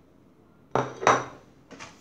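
Metal spoon scraping across a ceramic plate, two strokes about a second in and a fainter one near the end.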